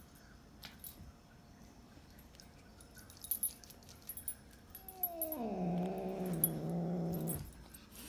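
A house cat giving one drawn-out warning growl of about two and a half seconds, starting about five seconds in, its pitch sliding down at the onset and then holding low. Before it there are only a few faint small taps.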